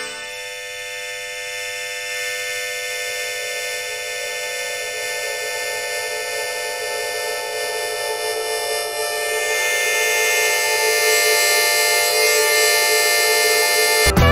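Harmonica playing a long held chord that swells louder about ten seconds in.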